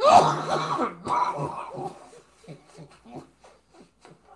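A man coughing hard: two loud coughing bouts in the first two seconds, then smaller coughs that fade away.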